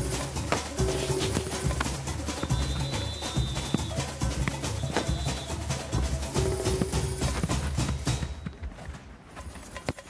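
Background music with a steady beat, a repeating bass line and held notes; it drops away about eight seconds in, leaving a few faint knocks.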